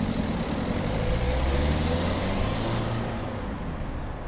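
Car engine running as a car drives off, its pitch shifting slightly, growing a little quieter near the end.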